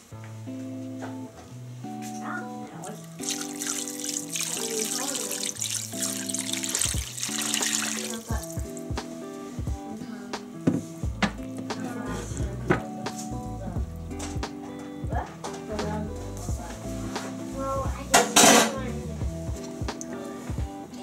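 Background instrumental music with a steady, stepping melody throughout. Under it, water pours into a ceramic slow-cooker crock for several seconds early on, followed by scattered light knocks of a spoon against the crock.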